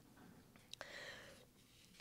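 Near silence: room tone, with a faint click and a short soft hiss about a second in.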